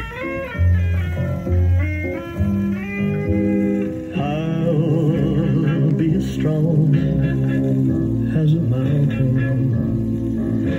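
Guitar-led pop music played from a 45 rpm single on a BSR console stereo record player, heard through the console's speakers.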